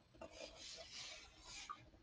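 Faint rubbing and scraping of hands sliding over a wooden box as it is turned over, lasting about a second and a half with a few small clicks.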